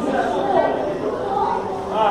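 Indistinct chatter of people's voices echoing in a large indoor hall, with no clear words.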